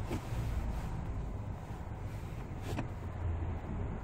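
Ford Explorer's 2.3-litre turbocharged four-cylinder engine and drivetrain heard from inside the cabin as a low, steady rumble while the SUV creeps in slow traffic. Two faint clicks are heard, one near the start and one about two and a half seconds in.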